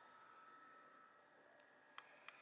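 Near silence: faint room tone with a light steady hiss.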